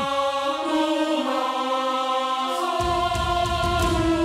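Background music score with chant-like voices holding long, sustained notes that step to new pitches about half a second in and again midway, with a low bass layer coming back in near the end.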